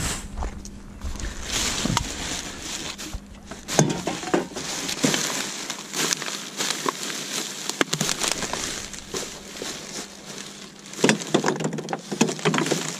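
Plastic rubbish bags crinkling and rustling as gloved hands rummage through them, with scattered knocks and clinks from the bottles and cans inside. The louder knocks come about four seconds in and again near the end.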